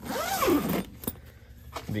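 Zipper on a Tentbox rooftop tent's canvas door being pulled open in one quick rasping run of under a second, followed by a short click.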